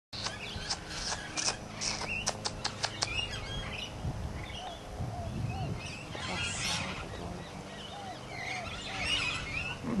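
Birds chirping and calling, with a quick run of sharp clicks in the first three seconds.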